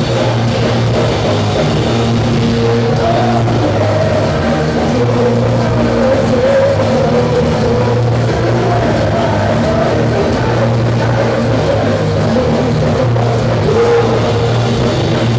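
Hardcore punk band playing live at full volume: distorted electric guitars, bass and a fast, steady drum-kit beat, heard from within the crowd.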